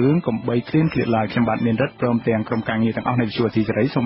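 Speech only: a man talking without pause in Khmer, with the narrow sound of a radio broadcast interview.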